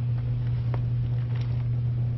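A steady low hum, with faint rustling and a soft click about a second in as hands turn over damp worm-bin bedding.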